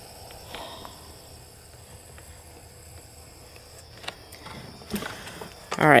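Quiet outdoor background with a few soft footsteps through grass and light clicks of camera handling, over a faint steady high-pitched tone.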